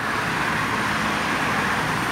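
A road vehicle passing close by: a steady rush of tyre and engine noise that swells about a second in and eases off.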